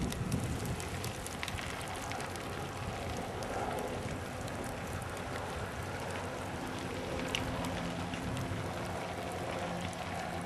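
Brush fire crackling: a dense patter of small pops over a steady hiss. A faint, steady low hum comes in about two-thirds of the way through.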